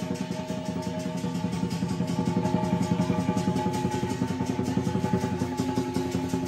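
Southern lion dance percussion: a fast, even roll on the big lion drum, with gong and cymbals ringing steadily underneath.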